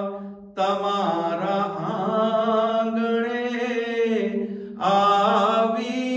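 A solo man's voice chanting a Gujarati manqabat, a devotional praise poem, into a microphone. He holds long, wavering notes, with brief pauses about half a second in and just before five seconds in.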